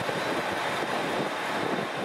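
Steady hum and hiss of a KiHa 281 series diesel express train standing at a platform with its engines idling.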